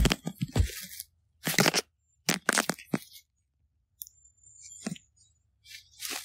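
Crunching and crackling in dry leaf litter in several short bursts with quiet gaps between, like steps through dead leaves.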